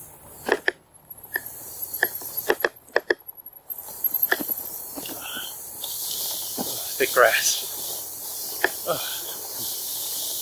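RadRover fat-tire e-bike rolling through thick tall grass: scattered clicks and rattles from the bike over rough ground, and a steady swishing hiss of grass brushing the pedals and frame that grows from about six seconds in. A short voice-like sound stands out about seven seconds in.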